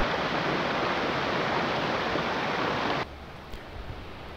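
Small mountain stream rushing over rocks in a cascade, a steady wash of water noise. It cuts off abruptly about three seconds in, leaving a much fainter hush.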